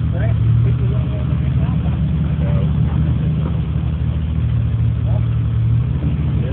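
Off-road vehicle engine idling steadily, a low, even rumble with a fast regular pulse and no revving. Faint voices can be heard over it.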